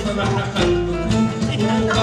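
Live piano music with a rhythmic accompaniment of low bass notes and regular percussive clicks.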